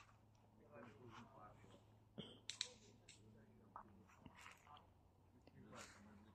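Faint, distant voices over a low steady hum, with a few sharp clicks a little over two seconds in.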